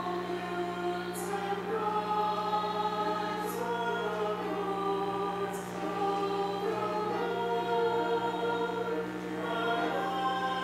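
Choir singing a psalm refrain in long held chords, with the hiss of sung 's' sounds about every two seconds.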